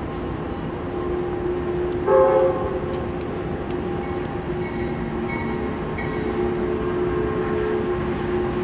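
Air horn of an approaching Norfolk Southern freight locomotive, still out of sight, sounding held tones that swell louder for a moment about two seconds in.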